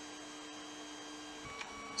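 Room tone with a steady low electrical hum; about one and a half seconds in the hum shifts to a higher, thinner tone.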